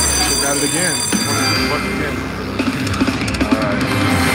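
Quick Hit slot machine's electronic win sounds as five Quick Hit scatter symbols land: a bright ringing chime starts at once and holds for about a second and a half over a low thud, followed by busier jingling game music.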